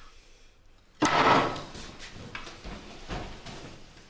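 A plate slammed down hard onto a table about a second in, a single loud bang that dies away quickly, followed by a few smaller knocks and shuffling.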